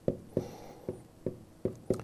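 Stylus tapping and knocking on a tablet's writing surface as a formula is written by hand: about six short, sharp knocks over two seconds.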